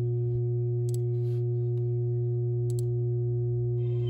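A few faint computer keyboard and mouse clicks as a new search is typed, over a steady low hum.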